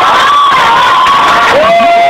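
A loud crowd of young voices cheering and screaming. Near the end, one voice rises above the noise in a long held shout.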